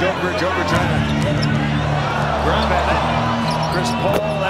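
NBA game audio: a basketball being dribbled on the hardwood court, with arena crowd noise and a commentator's voice, under background music with sustained low notes.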